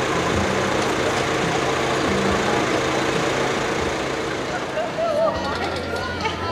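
A vehicle engine idling steadily under the chatter of an outdoor crowd, with voices coming up near the end.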